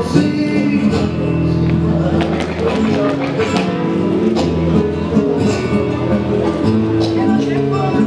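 Flamenco guajira music: a Spanish guitar strumming and plucking with a voice singing over it.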